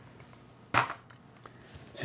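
One short clack of a spatula knocking against the food processor's plastic feed tube as butter is scraped in, followed by a couple of faint ticks.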